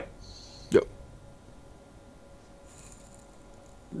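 A single brief vocal sound, a clipped 'yep', about three-quarters of a second in. Otherwise faint room tone over the call audio.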